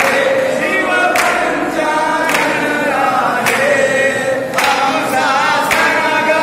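A group of voices singing a Hindu aarti together, with a sharp beat struck about once a second to keep time.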